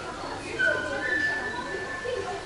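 A high, steady whistled note about half a second in, then a slightly higher whistle held for about a second, with people talking faintly in the background.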